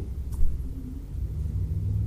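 Steady low background rumble with no speech, with one faint click about a third of a second in.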